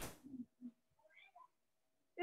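Near silence on a video-call line, broken by a few faint, brief sounds in the first second and a half.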